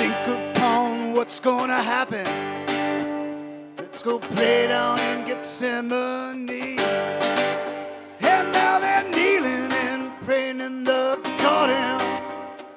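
A man singing long, sliding melodic lines to his own strummed acoustic guitar.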